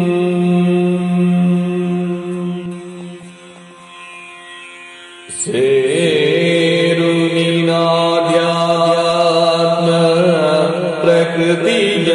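Yakshagana bhagavathike-style singing over a steady drone. A long held note fades away, then about five seconds in a new phrase begins loudly, its pitch wavering in ornaments.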